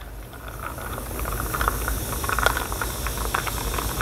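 Fizzing hiss of antacid tablets reacting in a vinegar mixture as it is stirred with a plastic spoon, with many small clicks of the spoon in the glass. The fizz grows louder about a second in.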